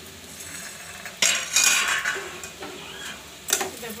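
Metal spatula scraping and clanking against a metal kadai as frying ivy gourd and potato pieces are stirred, over a light sizzle. The loudest scraping comes a little over a second in, with a sharp clink near the end.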